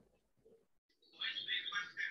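Birds chirping faintly, starting about halfway through after a moment of near silence.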